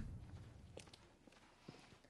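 Near silence with a few faint footsteps on a hard floor, about a second apart.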